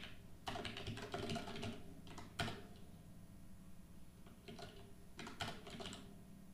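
Typing on a computer keyboard: a quick run of keystrokes for the first couple of seconds, a pause, then a few more strokes near the end.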